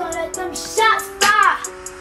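Hip hop beat without vocals: quick, even hi-hat ticks over held keyboard chords. About a second in come two short swooping pitched sounds, each rising and then falling.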